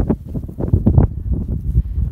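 Wind buffeting the microphone in gusts, a loud low rumble, with a few brief rustles.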